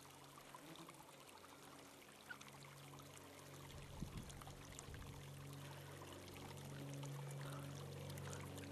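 Small mountain brook trickling and splashing over rocks, faint, and growing a little louder toward the end.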